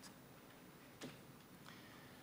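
Near silence: room tone, with a single faint click about a second in.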